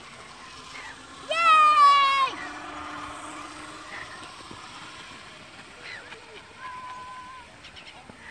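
A girl riding a playground zipline lets out one loud, wavering, high-pitched squeal about a second in, lasting about a second.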